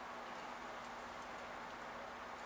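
Quiet room tone in a pause between speech: a steady hiss with a faint, even hum underneath.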